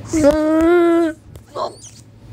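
A person's voice holding one drawn-out vocal note, steady in pitch with a slight rise, for about a second, followed by a short fainter sound near the end.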